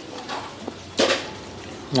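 Wooden chopsticks clicking and scraping against a ceramic bowl as food is picked up: a few short light clicks, the sharpest about a second in.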